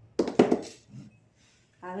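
Glass jar being picked up and handled on a tabletop: two sharp knocks close together near the start, then a fainter bump about a second in.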